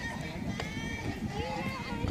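Indistinct voices of several people talking and calling at a distance, over a low rumbling noise.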